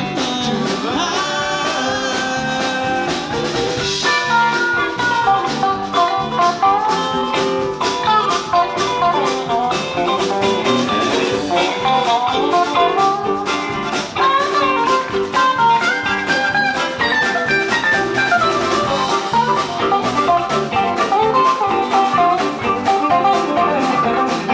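Live rock band playing an instrumental break with drum kit, bass guitar and electric guitar, a harmonica leading the melody.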